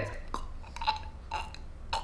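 A woman making short gurgling, choking sounds in her throat, four in a row about half a second apart, imitating a person dying from a slit throat.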